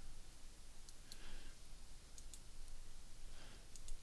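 Faint, scattered clicks of a computer mouse and keyboard, about half a dozen short sharp clicks at uneven intervals.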